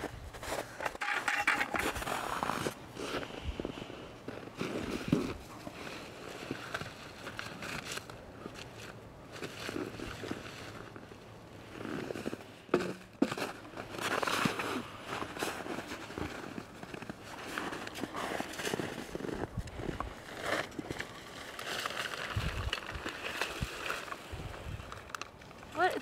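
Black plastic sheeting rustling and crinkling, with footsteps in snow, as a bucket of food scraps is emptied onto a compost heap; irregular, with a few sharp clicks.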